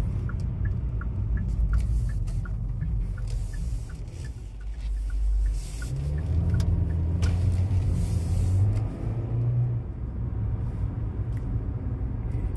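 In-cabin sound of a 2020 Kia Soul EX's 2.0-liter four-cylinder engine and road rumble, with a steady ticking of about three clicks a second through the first five seconds, like a turn-signal relay. About halfway through, the engine note rises as the car pulls away under throttle.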